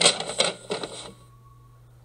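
Gift wrapping paper being crinkled and torn open, a dense run of crackles that stops about a second in.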